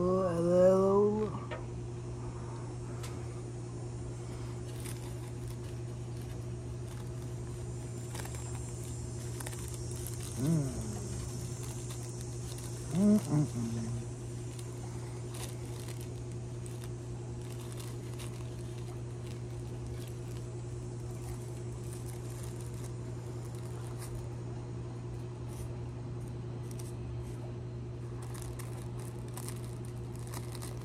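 Faint crinkling and small ticks of rolling paper and tobacco being handled as a cigarette is rolled by hand, over a steady low hum. Short hummed vocal sounds come just at the start and again about 10 and 13 seconds in.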